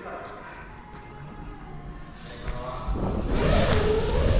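Mountain bike rolling fast down a skatepark ramp, with tyre noise and wind rush on the body-mounted camera's microphone. It builds sharply about three seconds in to a loud low rumble and hiss.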